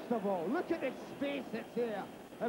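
A man's voice talking, fairly quiet, with no other clear sound beneath it.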